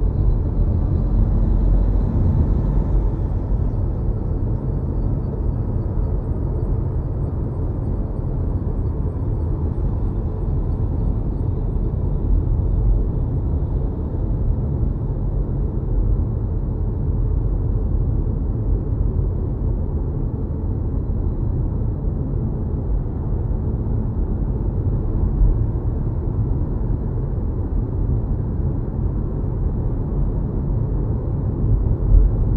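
Steady low road rumble of tyres and wind heard from inside an electric car's cabin cruising on a highway, with no engine note. It swells slightly in the first few seconds.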